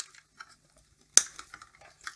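Small clicks and rustles of flat ribbon cables and a ferrite ring being handled inside a DVD player's sheet-metal chassis, with one sharp click a little over a second in.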